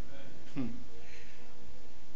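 Pause in speech: steady room tone, with a faint, brief voice about half a second in.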